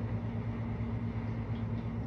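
Steady low electrical hum with a fainter, higher tone above it, from a motor or appliance running.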